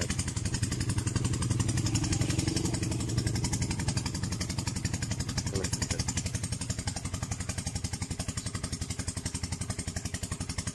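A small engine running steadily with a rapid, even pulse, a little louder in the first few seconds.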